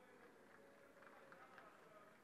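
Near silence: faint open-air ambience with distant, indistinct voices.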